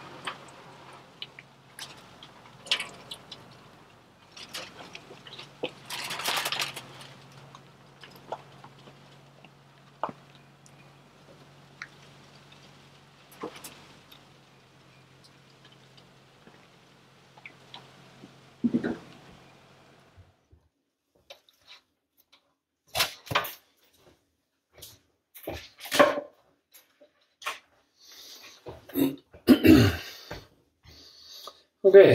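Aluminium foil pans and smoker racks being handled, with scattered clicks, knocks and crinkles and a louder rustling burst about six seconds in. A low steady hum sits underneath and stops about twenty seconds in. After that come isolated clicks and knocks with near-quiet gaps between them.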